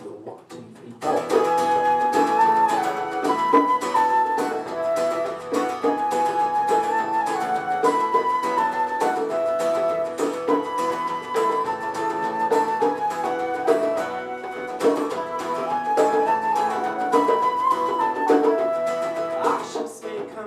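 Instrumental intro of an Irish folk song: a transverse flute plays the melody over strummed acoustic guitar, starting about a second in after a spoken count-in.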